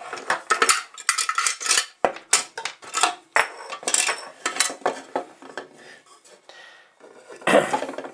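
Aluminium Bundeswehr mess-kit pot and lids clinking and scraping against each other as they are handled, with many short clinks at first. There is a louder clatter near the end as the nested inner part is lifted out.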